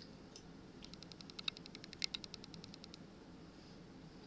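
A rapid, even run of small, sharp clicks, about ten a second for some two seconds, starting just under a second in, over low room tone.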